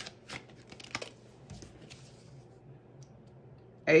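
Tarot cards being handled: a quick run of light clicks and taps as a card is pulled from the deck, thinning to a few faint ticks after about a second.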